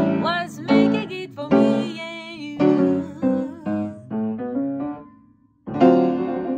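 Female jazz vocal with piano: wordless sung notes with vibrato over piano chords, dying away about five seconds in. After a moment of near silence a new piano chord comes in just before the end.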